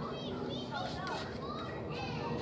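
Distant children's voices: short rising-and-falling calls and shrieks, over a steady background of outdoor noise.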